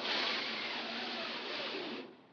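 Heavy drapes being drawn open along their rod: a steady swishing rush that stops abruptly after about two seconds.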